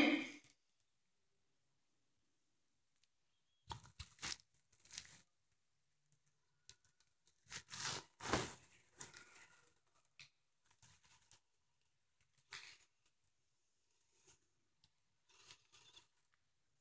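Faint, scattered rustling and scraping noises: a handful of short bursts with near silence between them, the loudest pair about eight seconds in.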